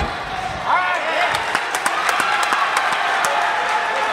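A gymnast's parallel-bars dismount landing on a padded mat: a dull thud at the very start. Then spectators shout and cheer, and scattered clapping follows.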